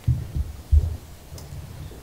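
Three dull, low thumps in the first second, then a faint low hum.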